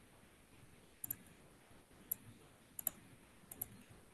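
Faint, sparse clicks from computer use, about seven in all, several coming in quick pairs.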